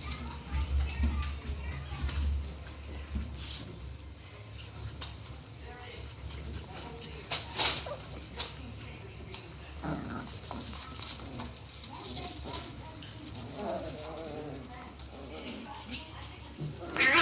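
Alaskan Klee Kai puppies playing together: scuffling and sharp clicks of paws and claws throughout, with short bursts of small pitched puppy noises about ten seconds in and again near the end.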